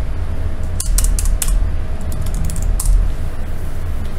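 A few quick computer-keyboard key clicks, a short cluster about one to one and a half seconds in and one more near three seconds, as a name is typed in. Under them runs a steady low hum.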